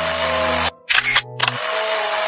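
Mechanical whirring and rattling of a toy building-brick machine's hand crank being turned, feeding a paper printout out through its rollers. It stops suddenly about two-thirds of a second in and starts again a moment later.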